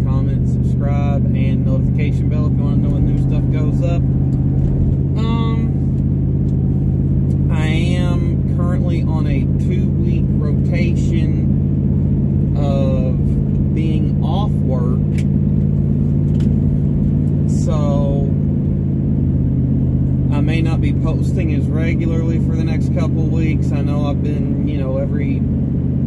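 Steady drone of a car's engine and road noise, heard from inside the cabin while driving, with a man's voice talking over it.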